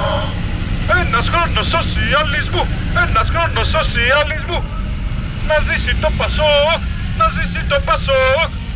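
A man's voice calling out in short, sing-song phrases through a megaphone, over the steady low rumble of a car engine running.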